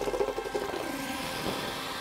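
Horror-trailer sound design: a churning, rumbling texture, busiest in the first second and a half and then steadier, with no clear musical tones.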